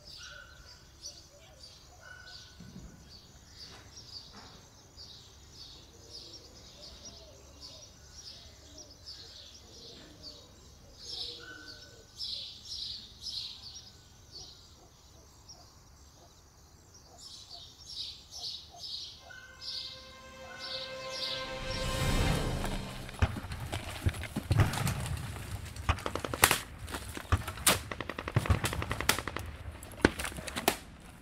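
Birds chirping with short repeated calls; about two-thirds of the way through, a rumble swells and gives way to rapid gunfire with machine-gun bursts, the loudest part.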